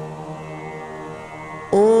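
Devotional mantra chanting with a steady drone held between phrases. Near the end a voice starts the next phrase with a long held "Om", sliding up slightly into the note.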